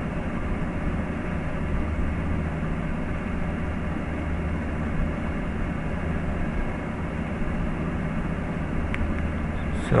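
Steady background hum and hiss with a low drone, unchanging throughout, and a single faint click about a second before the end.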